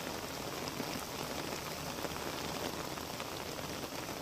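Heavy rain falling steadily on a wet road and trees.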